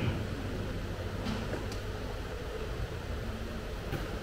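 Steady room noise in a hall during a pause in speech: a constant low hum under a faint hiss.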